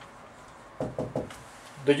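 A dry-erase marker tapping against a whiteboard: three quick knocks about a second in as the writing is finished, then a man's voice begins near the end.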